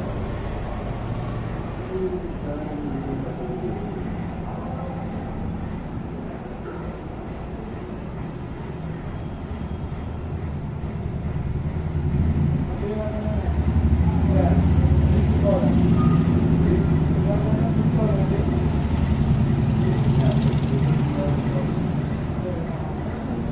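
Low rumble of a vehicle engine with indistinct voices, the rumble growing louder about twelve seconds in.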